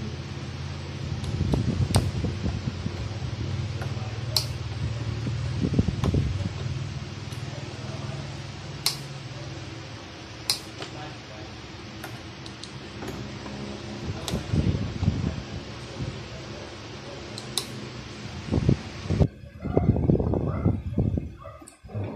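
Sharp plastic clicks and handling knocks as an electric kettle's housing and switch assembly are fitted back together by hand. Under them runs a steady fan-like whir that stops abruptly near the end.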